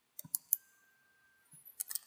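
Computer mouse and keyboard clicks: three quick sharp clicks in the first half second, then a scatter of key taps near the end.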